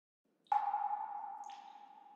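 A bell-like tone struck once about half a second in and ringing on as it slowly fades, with a second, lighter and higher strike about a second later.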